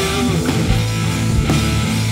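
A live rock band plays an instrumental passage with no vocals: electric guitar, drum kit and keyboard play together at a steady, loud level.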